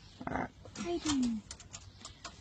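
A wire mesh cage trap clicks and rattles a few times as it is handled, with a short spoken "alright" near the start and a brief low sound falling in pitch about a second in.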